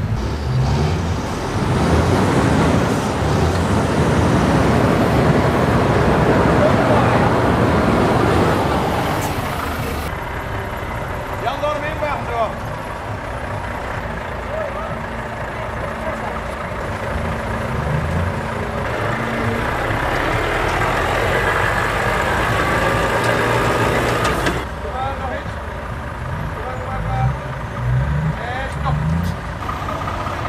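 Heavy truck diesel engines running as tractor units drive slowly across a grass field, with voices in the background. The sound is loudest in the first ten seconds and changes abruptly twice.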